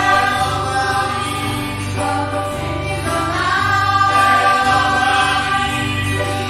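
A small church choir of men and women singing a hymn together from song sheets, holding long notes, with steady low notes sounding beneath the voices.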